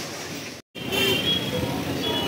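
Road traffic at a busy street crossing, motorbikes and cars running, with a steady high-pitched tone through it. It comes in suddenly after a brief drop to silence in the first half-second.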